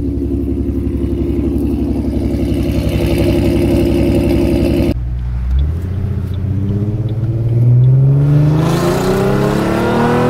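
Ford Mustang engine running steadily, then, after an abrupt break about halfway, the car pulling away with the engine note climbing and getting louder under acceleration.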